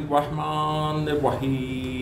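A man chanting Quran recitation in Arabic, his voice drawn out in long held, melodic notes over two phrases.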